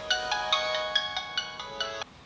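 Mobile phone ringtone: a quick melody of bright, chiming struck notes that stops abruptly at the end.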